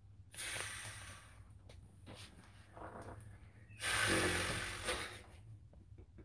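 A man breathing heavily close to the microphone: two long, rushing breaths of about a second each, the second, about four seconds in, the louder.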